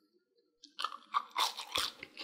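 Crunching of a crispy fried potato-and-cornstarch stick: a quick run of crackling crunches that starts just under a second in.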